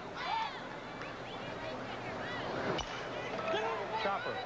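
Crowd chatter and voices in a ballpark's stands, with one sharp aluminum bat striking a pitched baseball about three-quarters of the way through, putting a ground ball in play.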